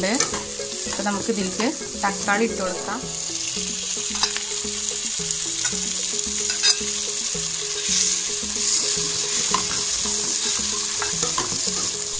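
Chopped onions and green chillies sizzling in hot oil in a non-stick pan, stirred with a spatula that scrapes across the pan.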